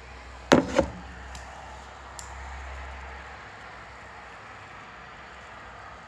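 Two sharp knocks in quick succession, about a quarter second apart, over a steady low hum that stops about three seconds in.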